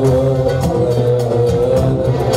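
Live band music: a male singer holds a long, wavering note over electronic keyboard accompaniment, with regular percussion strikes.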